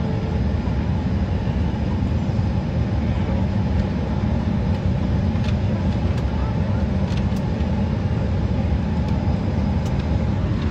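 Steady low drone of a passenger airliner's cabin in flight, engine and airflow noise at an even level.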